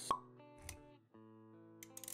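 Intro sound effects over soft music: a sharp pop just after the start is the loudest sound, then a low thud. The music drops out for a moment about a second in and comes back with held tones.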